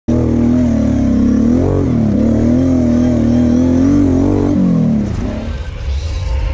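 A green Kawasaki KFX sport quad's engine revving hard and holding a high, wavering pitch as it climbs a sand track, with a brief dip about two seconds in. Near the end the revs fall away.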